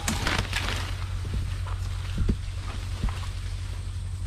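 Leaves rustling and scraping and knocking against a tree trunk as someone climbs it: a dense burst of rustling at the start, then scattered knocks and crackles over a steady low rumble.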